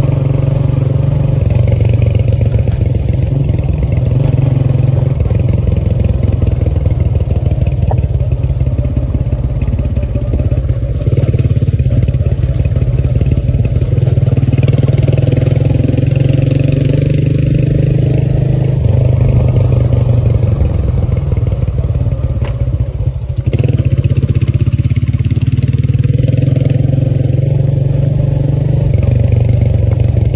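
Small motorcycle engine running steadily under way on a dirt track. The engine note shifts in steps a few times and dips briefly about three-quarters of the way through.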